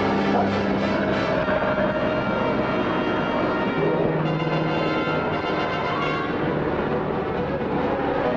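Dramatic orchestral score with held chords that shift about halfway through, over the engine drone of a single-engine light plane going down trailing smoke.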